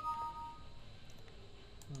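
Short electronic chime from the virtual lab software, two steady notes sounding together and dying away within about a second.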